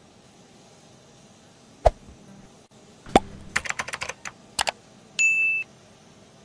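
Sound effects for an on-screen subscribe-button animation. There is a sharp click about two seconds in, then a knock and a quick run of typing-like clicks. A short high beep comes near the end. Under it all is a faint steady hum.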